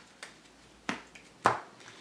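Playing cards being cut and squared by hand: three sharp clicks of card packets meeting, the loudest about a second and a half in.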